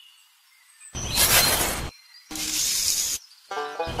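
Sand scraped up with a miniature metal shovel and poured into a small aluminium bowl, in two bursts of gritty hiss about a second long each. Music starts near the end.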